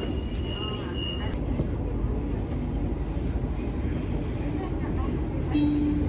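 Interior of a Sydney suburban passenger train running through an underground tunnel: a steady low rumble of wheels on rails and the running train. A thin high whine sounds for about the first second, and a short pitched tone comes near the end.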